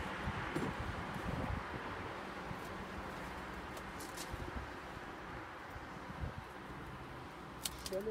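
Steady rustling noise, heaviest in the first couple of seconds and then easing, with a few light clicks and soft knocks as beehive equipment is handled.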